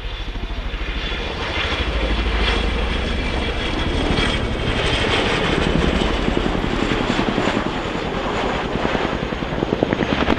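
RAF CH-47 Chinook tandem-rotor helicopter flying low, its two rotors giving a fast, steady blade beat over the whine of its twin turboshaft engines. The beat grows stronger near the end.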